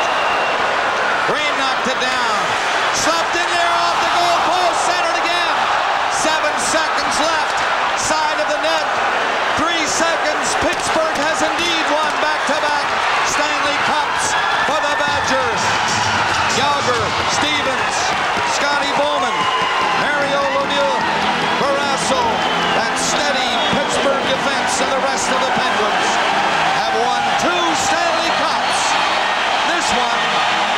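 Arena crowd cheering, a loud, steady roar of many overlapping voices, with sharp claps and bangs all through it.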